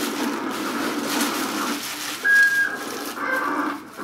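A short, high, steady whistle-like tone a little past halfway, followed by a fainter one soon after, over a low background murmur.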